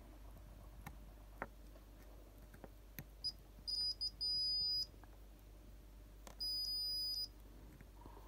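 Multimeter continuity beeper sounding as the probes touch the pins of a power MOSFET (FET): a few short chirps, then a beep of about half a second, then a second beep of about a second. The beep signals a short across the MOSFET's pins, the fault found in this hub motor controller.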